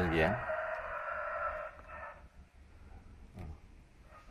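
A rooster crowing once, one long call of about two seconds starting just after a man's brief "à".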